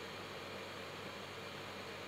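Faint steady hiss with a low, even hum underneath: the recording's background noise between words.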